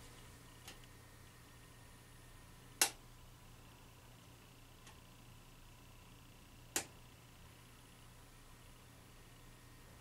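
Faint, steady hum of a T12 rapid-start fluorescent fixture running its two 40-watt tubes just after switch-on, from a heavy ballast that the owner takes to be magnetic. Two sharp clicks, about four seconds apart, stand out over the hum.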